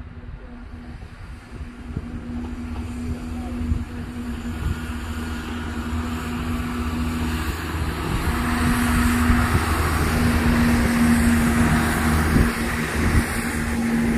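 CrossCountry Class 170 Turbostar diesel multiple unit running past, its underfloor diesel engines giving a steady hum over a low rumble of wheels on rail. It grows louder over the first half, then stays loud as the carriages go by.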